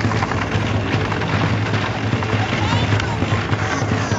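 Countertop blender running steadily, pureeing chicken carcass and skin: a low motor hum under a dense whirring noise.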